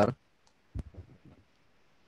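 A sharp click about three-quarters of a second in, followed by a few soft, muffled knocks, like handling noise on a video-call microphone.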